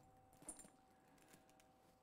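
Near silence, with one faint click about half a second in from the metal clip of a leather shoulder strap being undone to take out its extender.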